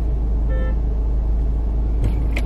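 Steady low rumble of a parked car idling, heard from inside the cabin, with a brief faint tone about half a second in.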